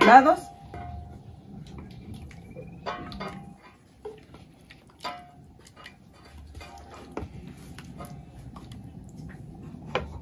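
Light clinks and knocks of dishes and utensils, scattered and irregular, as food is handled and served.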